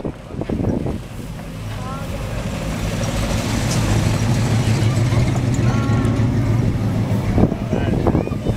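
Classic 1960s car's engine running at a low, steady note as the car rolls slowly past close by, growing louder from about a second in and staying strong until near the end.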